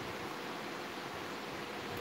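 Electric fan running: a steady, even whoosh of moving air.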